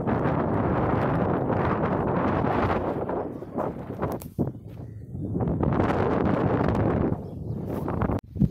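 Wind buffeting the microphone in gusts: a loud, rough rumble that drops into a lull around the middle and then comes back.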